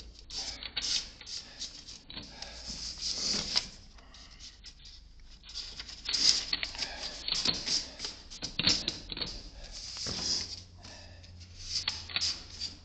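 Paper sheets being handled and pushed into the gaps of metal mailboxes: irregular crisp rustling with light clicks, easing off for a moment about four seconds in.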